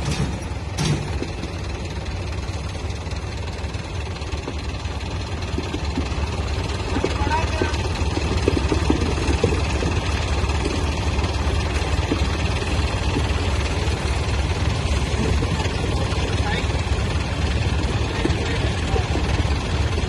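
Diesel engines of two tractors, a Mahindra Arjun 605 and a John Deere 5305, running steadily together in a continuous low rumble that grows slightly louder from about six seconds in.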